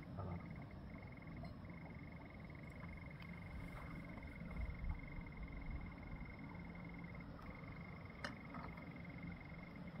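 A steady high-pitched animal trill of fine rapid pulses, pausing briefly a few times, over a low background rumble with a few faint clicks.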